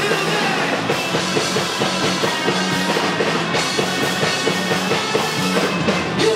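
Rock band playing live at full volume: drum kit keeping a steady driving beat under electric guitar and bass guitar.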